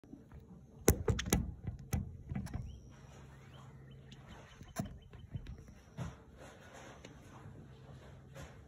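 Handling noise from a phone being positioned on a windowsill: a quick cluster of sharp clicks and knocks about a second in, then a few lighter scattered knocks, over a low steady hum.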